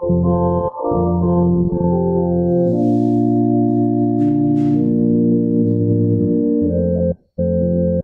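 Church organ playing a prelude in held, sustained chords, with brief breaks between phrases about a second in and again near the end.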